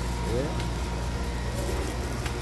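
Busy street-market ambience: a steady low rumble, with a brief snatch of a passing voice about half a second in.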